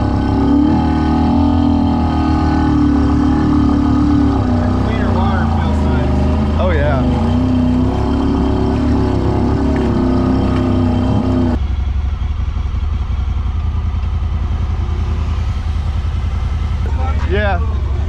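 Honda Talon side-by-side's engine running steadily at low speed while wading through deep water. About two-thirds of the way in, its sound changes abruptly and loses its upper tones.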